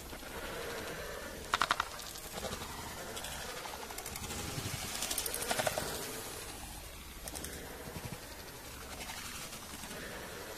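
Faint outdoor background with a few brief bird calls, each a quick run of short pulses: one about a second and a half in, a longer run around the middle, and a couple of weaker ones later.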